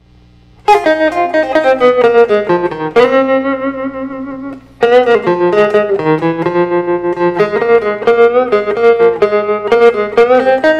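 Electric guitar (Fender Stratocaster) with a tremolo effect playing a single-note blues solo in F. It starts about a second in, holds one long note that dies away near the middle, then goes on picking more phrases.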